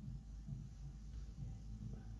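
Faint, uneven low rumble of room noise, with no distinct sound standing out.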